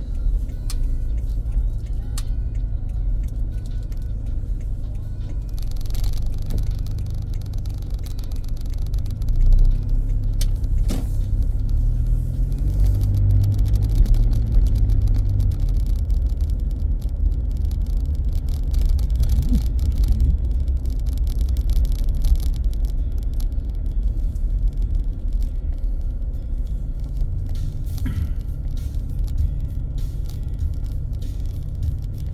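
Car interior noise while driving slowly: a steady low engine and road rumble, swelling a little about halfway through.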